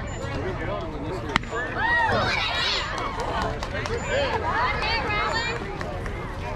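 A baseball bat hitting a pitched ball with one sharp crack about a second and a half in, followed at once by spectators yelling and cheering loudly in bursts.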